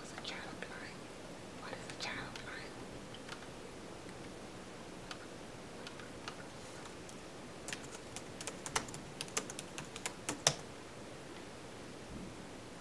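Typing on a computer keyboard: a quick run of key clicks in the second half, ending with one harder keystroke. Faint muttered whispering comes early on.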